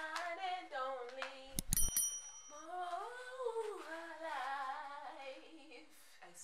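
A woman singing on her own, with no accompaniment, along to music she hears through her headphones; she holds and slides between long notes. A short knock with a brief high clink comes about one and a half seconds in.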